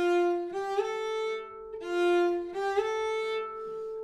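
Cello bowed in its upper range, playing a high F natural that shifts up with a short slide to a higher held note, the figure played twice in a row.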